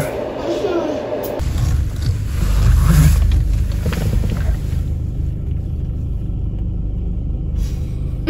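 A low, steady rumble that starts abruptly about a second and a half in and runs on.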